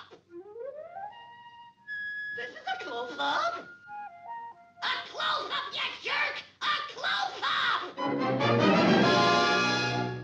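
A quick string of cartoon sound effects and squawky, wordless voice noises: a rising whistle-like glide, short held tones and a few stepped bleeps, ending in a loud rasping noise over the last two seconds.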